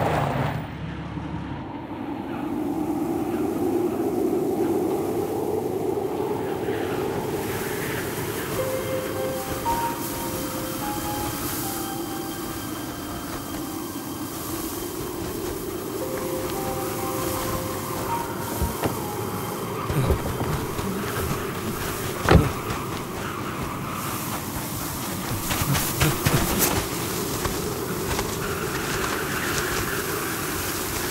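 Steady rumble of a moving vehicle on a film soundtrack, with a few sparse music notes over it twice and occasional sharp knocks, the loudest about two-thirds of the way through.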